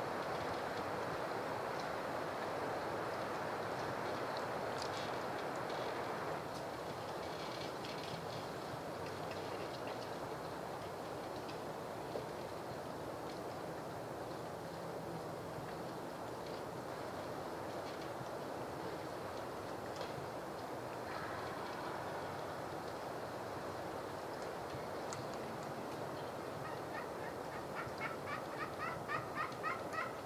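Wild turkey gobbling near the end, a rapid rattling run of notes, over a steady background hiss in the woods.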